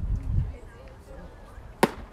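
A baseball pitch smacking into the catcher's leather mitt: one sharp, short pop near the end.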